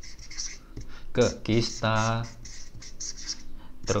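Marker pen writing on flipchart paper: a run of short scratchy strokes as letters are drawn.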